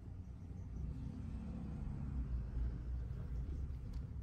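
Domestic cat purring close to the microphone, a low steady rumble that swells about two seconds in.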